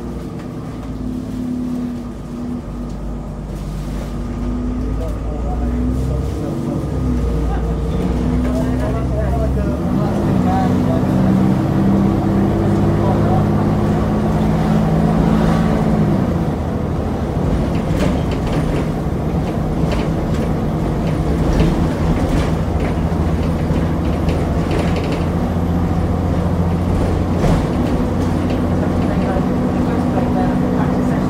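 Diesel engine of a double-decker bus heard from the lower deck. It runs steadily at first, then revs up about ten seconds in as the bus pulls away and accelerates. The pitch shifts a few seconds later, as at a gear change, and the bus runs on steadily under way with scattered interior rattles.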